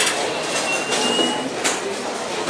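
Bowling alley din, with balls rolling on the lanes and lane machinery running. A thin high squeal rises slightly in pitch through the middle, and a sharp clack comes near the end.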